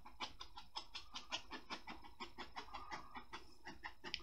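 Paintbrush dabbing oil paint onto stretched canvas: a run of quick, soft taps, about five a second, as the bristles are stippled in short strokes.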